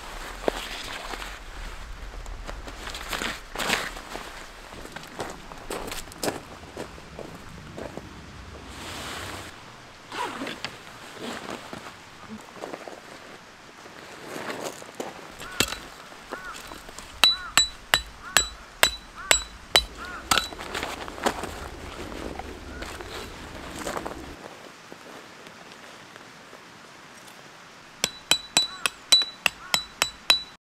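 Tent fabric and poles rustling and knocking as the tent is handled, then a hammer driving metal tent pegs into gravel. The hammering comes as a run of sharp, ringing metallic strikes, two or three a second, from about halfway through, and a second quick run near the end.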